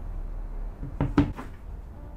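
Glass mug knocking against a hard tabletop: three quick clinks about a second in, the middle one loudest and briefly ringing.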